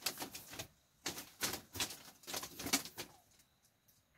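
Clothes rustling and bamboo clothes hangers knocking as garments are shaken out and hung on a bamboo pole, in irregular bursts that stop about three seconds in.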